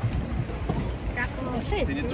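Wind rumbling on the microphone aboard an open rowed boat on the water, with faint voices talking through the second half.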